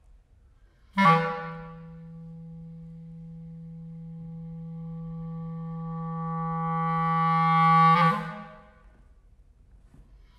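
B-flat clarinet playing one long low note: a sharp accented attack about a second in, falling back soft, then a slow crescendo to a loud peak before it stops about eight seconds in.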